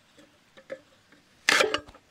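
Hand-lever sugarcane bud cutter chipping a bud out of a thick cane: a few faint clicks as the blade is set on the cane, then one short, loud cut through the cane about one and a half seconds in.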